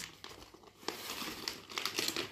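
Gift-wrapping paper crinkling and rustling as it is pulled open, starting about a second in.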